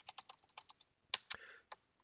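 Faint typing on a computer keyboard: a quick run of key clicks, with a few louder strokes a little past the middle.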